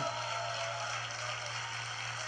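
Audience applause from a livestream, played through laptop speakers: an even, crackling patter, over a steady low hum.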